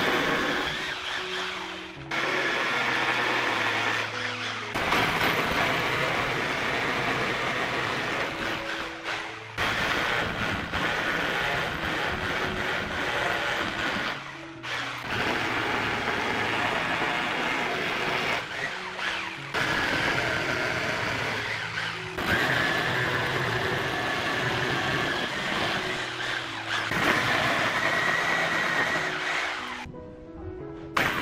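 Corded rotary hammer drill boring into a concrete wall, in stretches of a few seconds that break off suddenly. Background music plays under it.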